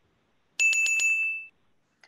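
A bell sound effect marking a correct answer in a quiz game: a quick run of about five bright dings, ringing out briefly after the last.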